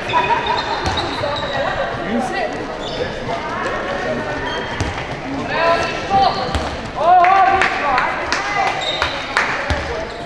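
A handball bouncing on a wooden sports-hall floor, with high-pitched shouts and calls from young female players in a large hall; the loudest call rises in pitch about seven seconds in.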